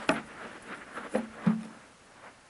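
Small clicks and taps of loose screws and a screwdriver being handled: one at the start, then two more just over a second in.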